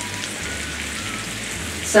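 Diced potatoes and onions frying in oil in a cast iron skillet: a steady sizzle.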